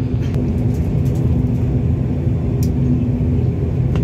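Turboprop airliner's engines and propellers droning steadily, a low rumble with a constant hum, heard inside the passenger cabin as the plane taxis.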